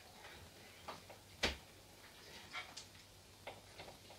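Quiet room with a few faint, short clicks, the clearest one about a second and a half in.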